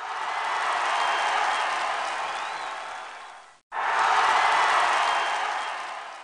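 Crowd applause and cheering, an added sound effect: it swells in and fades, cuts out for an instant about three and a half seconds in, then swells in and fades again.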